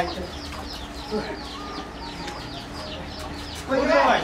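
A bird chirping rapidly and repeatedly: a long string of short, high, falling chirps, several a second.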